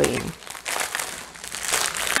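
Clear plastic packaging crinkling and rustling in irregular bursts as hands handle a strip of small bagged diamond-painting drills.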